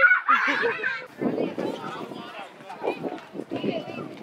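A young child's high-pitched voice, rising and falling in pitch, for about the first second. After that comes quieter busy playground background with scattered voices and movement.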